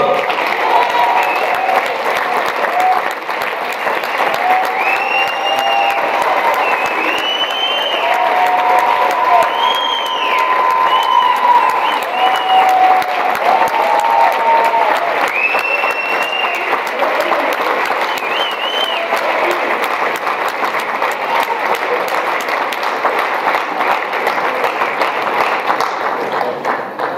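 Audience applauding warmly and steadily. Individual voices in the crowd call out and cheer over the clapping for most of the first two-thirds, then fade, leaving the clapping alone.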